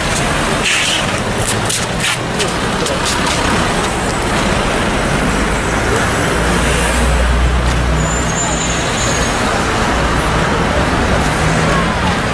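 Street traffic with car engines and a steady hiss of road noise; a heavier, deeper engine rumble swells about six seconds in.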